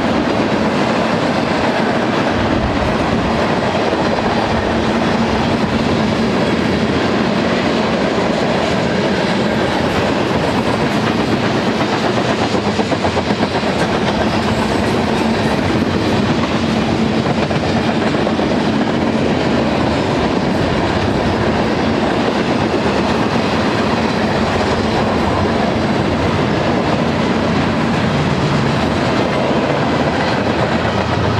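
BNSF manifest freight train's tank cars and boxcars rolling past: steady, loud steel-wheel-on-rail noise. Near the end the low rumble of the train's mid-train distributed-power diesel locomotives begins to build as they approach.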